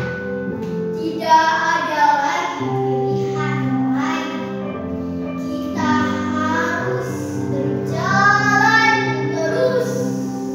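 A girl's voice singing in four separate phrases over backing music of long held notes.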